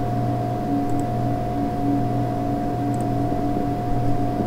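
A steady hum: a constant mid-pitched whine over a low drone, unchanging throughout.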